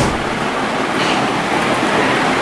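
Steady rushing noise, with a short click right at the start.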